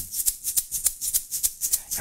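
A hand-held shaker shaken in a quick, even rhythm, its beads giving a short hiss on each stroke.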